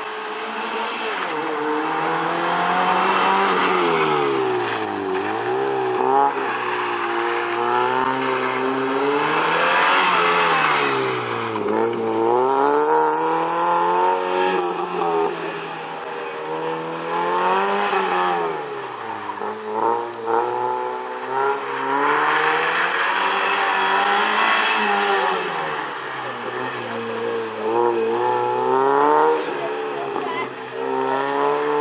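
Fiat Seicento rally car's engine revving hard and backing off repeatedly as it is driven flat out around a tight course. The pitch climbs and falls every few seconds as it accelerates, lifts and brakes for the turns.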